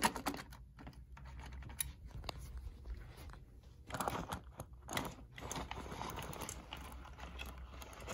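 Faint, irregular small clicks and rattles from a powered-up Tyco model steam locomotive being handled on its test track, with a low steady hum underneath. The clicking is busiest about four to five seconds in. The locomotive does not run.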